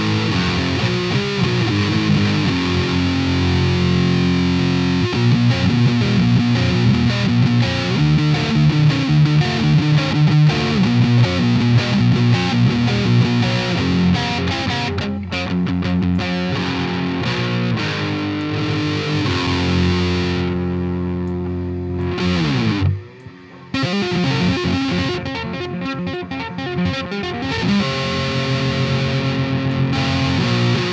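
Distorted electric guitar riff played through the Poulin LeCto high-gain amp-simulator plugin on an overdriven channel. About 22 seconds in a note slides down in pitch, the sound cuts out for under a second, and then the riff starts again.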